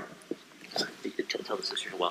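Quiet, indistinct voices of a few people speaking softly in short fragments.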